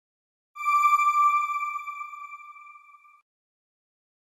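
A single electronic ping, a bell-like sound-effect chime, struck once about half a second in, then ringing on one steady pitch and fading away over nearly three seconds before it cuts off.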